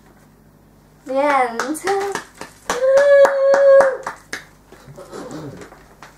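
A girl's voice making wordless sounds: a short gliding sound, then a held note of about a second, with sharp clicks in between. A fainter, lower voice follows near the end.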